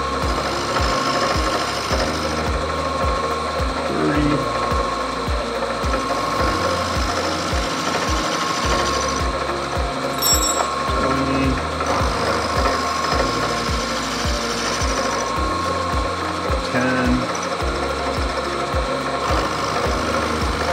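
Vertical milling machine running a four-flute carbide end mill as it cuts the tangs of a 1911 pistol frame. The spindle gives a steady whine, with a regular low clicking about twice a second under it.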